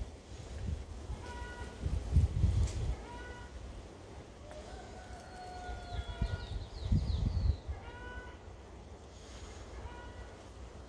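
Animal calls: several short pitched calls, a longer held call a little before the middle, and a quick run of short high calls around two-thirds of the way through. Low rumbles on the microphone come twice, a couple of seconds in and again near the calls.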